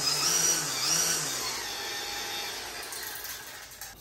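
DeWALT 60V FlexVolt brushless string trimmer motor spinning the trimmer head at low speed. Its pitch steps up and down between the trigger's distinct speed steps, then it winds down and fades over the last couple of seconds.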